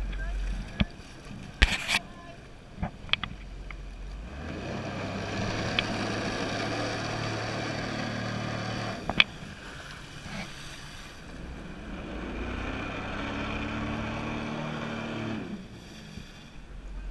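Jet ski engine throttled up and held for several seconds, eased off about nine seconds in, then throttled up again before dropping near the end. It is driving the flyboard, with several sharp knocks in the first few seconds before the first rise.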